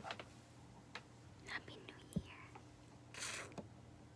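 Faint clicks, taps and rustles of a person moving and handling things after the singing has stopped, with soft breathy vocal sounds. The loudest is a short breathy burst about three seconds in.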